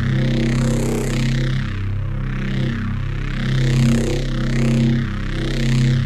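A held neuro bass synth note, low and growling, while one MIDI dial sweeps its saturator, chorus and CamelCrusher distortion macros together. The tone gets harsher and brighter, then smoother, rising and falling in about three waves. The note stops just after the end.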